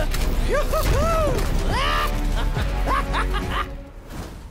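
Cartoon soundtrack: dramatic background music with a man laughing about two seconds in, fading out near the end.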